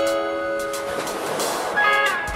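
Background music with held notes and a swell of noise in the second half.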